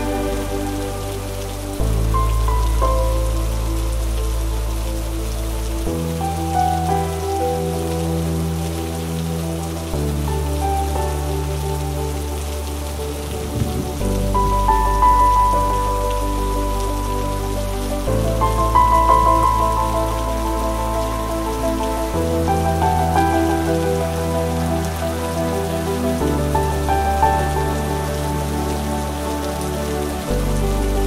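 Steady rain falling on paving stones, mixed with slow, soft instrumental music whose chords and bass notes change about every four seconds.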